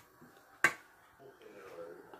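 A single sharp click of a utensil striking a serving dish, a little over half a second in, with quiet handling of steamed vermicelli before and after.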